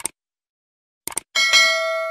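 Subscribe-button animation sound effect: short mouse-style clicks at the start and again about a second in, then a notification bell ding that rings on and slowly fades.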